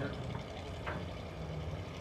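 Bomber-class stock car engine running at low speed, a faint steady low hum under the track's background noise.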